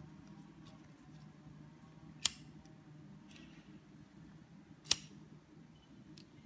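Two single sharp clicks about two and a half seconds apart, over a faint steady low hum.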